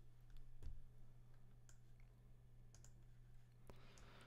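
Near silence: a handful of faint computer mouse clicks, spaced irregularly, over a low steady hum.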